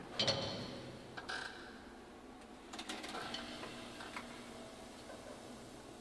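Faint scattered knocks and clinks from a drum kit being handled between takes, each with a brief ring. The loudest comes right at the start, a few more follow about a second and three seconds in, and a last one comes past four seconds.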